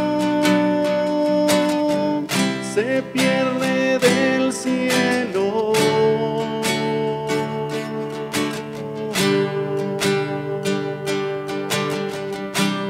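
Nylon-string classical guitar strummed in a steady rhythm of chords, with a man's voice holding long sung notes over it, changing pitch a few times.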